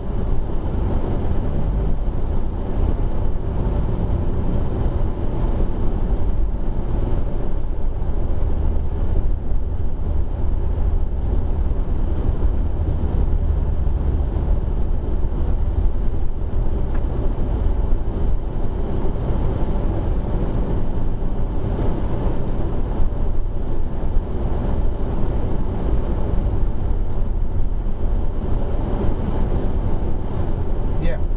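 Steady car cabin noise while driving: a continuous low rumble of engine and tyres on a wet, slushy road, heard from inside the car.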